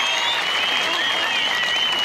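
Rally crowd applauding, a steady wash of clapping with high whistles gliding up and down over it.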